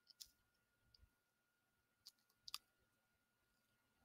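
Near silence with a few faint, short clicks, about three of them, two close together a little past halfway.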